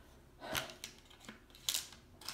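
Paper and a plastic ovulation test strip being handled, rustling and clicking: a short rustle about half a second in and a sharper, brighter rustle near the end.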